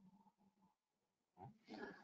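Near silence, with a faint short noise about a second and a half in.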